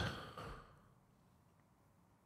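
A man's soft breath out into a close microphone, fading away within about half a second, then near silence.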